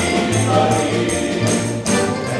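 Male vocal ensemble singing a Serbian song in harmony, with accompaniment keeping a steady beat.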